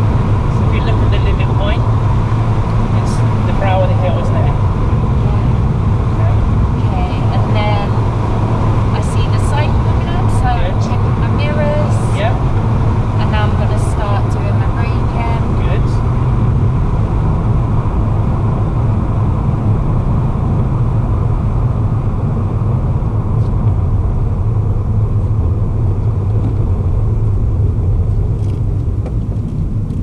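Steady road and engine noise inside a moving car's cabin, a deep continuous rumble. Faint short chirpy sounds come and go over it in the first half.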